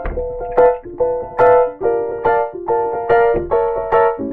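Impact Soundworks Water Piano, a sample library of a grand piano partly filled with water, played from a keyboard: a flowing run of single notes and chords, several a second, each note dying away quickly.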